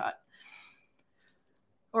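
A soft breath-like hiss, then a few faint, short clicks in the middle of a pause in talk.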